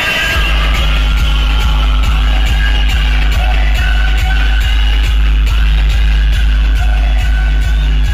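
Music played very loud through a DJ truck's large speaker system. A deep, sustained bass comes in just after the start, under a fast, steady beat of about three strokes a second and a high melody line.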